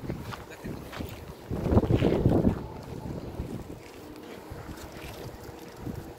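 Wind buffeting the phone's microphone, a low rumbling noise that swells into a stronger gust about two seconds in.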